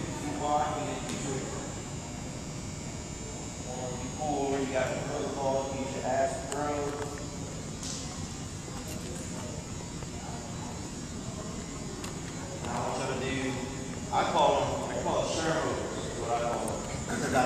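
Indistinct voices talking in a large, echoing gymnasium, over a steady background hum.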